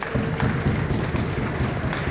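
Spectators applauding the match decision, the clapping swelling up suddenly right at the start and holding steady.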